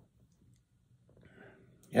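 Near silence: room tone, with a faint short noise a little past halfway, then a man's voice starting to speak at the very end.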